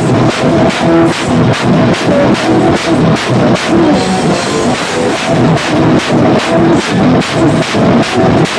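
Drum kit played hard, snare and cymbal hits landing in an even beat of about three a second, with sustained pitched music sounding along with the drums.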